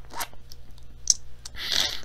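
A few faint clicks, then a short breathy exhale near the end, from a person stifling a laugh.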